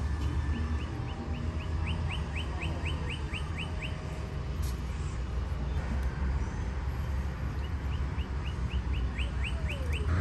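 A songbird singing two bouts of rapid, evenly repeated high chirps, each lasting about three seconds, over a steady low background rumble.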